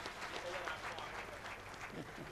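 Audience applause: a dense patter of many hands clapping, fairly faint and steady.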